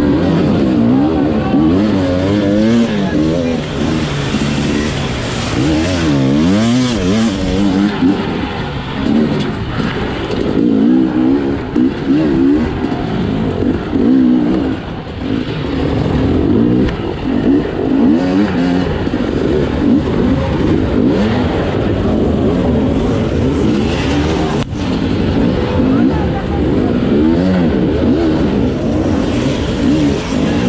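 Two-stroke enduro motorcycle engine revving up and down again and again as the throttle is worked on and off, heard from onboard the bike.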